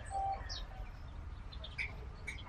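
Birds chirping faintly, a few short separate calls, over a low steady background rumble.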